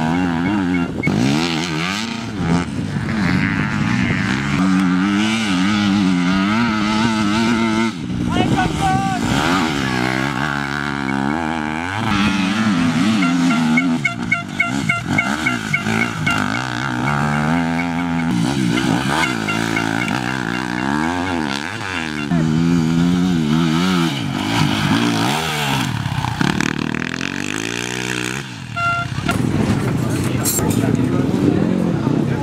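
Off-road enduro motorcycles racing on a dirt special test, their engines revving up and down again and again as the riders accelerate, shift and back off through the turns.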